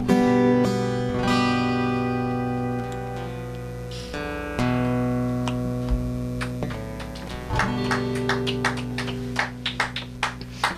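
Acoustic guitar playing the outro of a song: strummed chords left to ring for a few seconds each, then a run of quick strums near the end.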